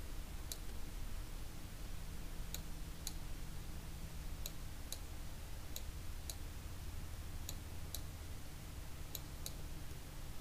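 Computer mouse clicking: about a dozen faint, sharp clicks at irregular intervals, over a steady low hum.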